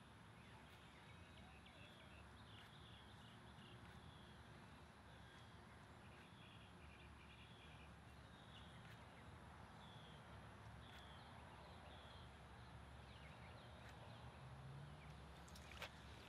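Near silence: faint outdoor background with short, faint bird chirps every second or so.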